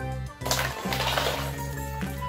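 Background music throughout. About half a second in, a burst of plastic toys clattering and spilling lasts about a second.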